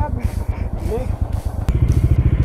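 Motorcycle engines idling close by, a steady low pulsing. A sharp click comes near the end, after which the engine pulsing grows louder.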